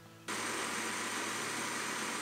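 Countertop blender switched on and running steadily at full speed, puréeing a jug of whole tomatoes. It starts suddenly about a quarter second in as a loud, even whirring hiss.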